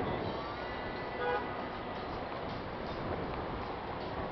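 Steady outdoor background rush, with a short pitched horn-like toot about a second in.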